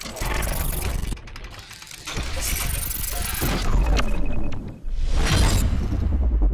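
Intro logo sting of sound effects: breaking-glass shatters with deep bass hits, in three loud surges about two seconds apart, over music.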